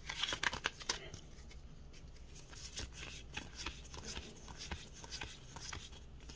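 Magic: The Gathering trading cards slid one by one off a stack held in the hands: soft, irregular card-on-card clicks and rustles, denser in the first second.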